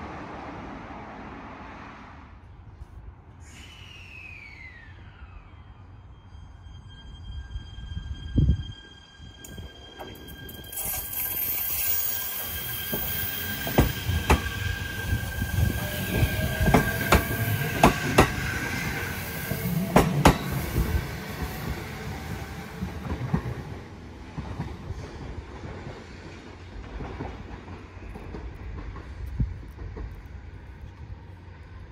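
JR East E127-series electric train pulling out of the platform: a steady high-pitched tone, a whine rising slowly in pitch as it speeds up, and wheels clacking sharply over rail joints, dying away after about twenty seconds. A single thump comes about eight seconds in.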